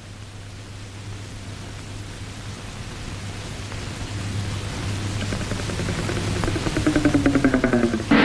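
Steady low hum and hiss of an old film soundtrack, with background music swelling in over the last few seconds: a sustained pitched tone that pulses rapidly and grows louder toward the end.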